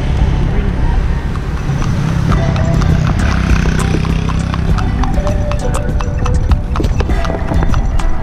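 Horse's hooves clip-clopping on asphalt as it pulls a cart, a run of sharp hoof clicks that starts about two seconds in, over a steady low rumble.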